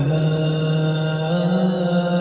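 Slowed, reverb-heavy Bollywood song: a singer holds one long note that steps up slightly about two-thirds of the way through, over soft backing with no bass.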